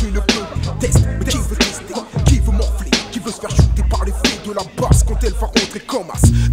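1996 French rap track: rapping over a hip-hop beat with deep kick drums and sharp snare hits.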